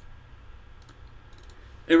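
A few faint clicks of a computer mouse, in two small clusters, as a context menu is worked and the canvas is clicked.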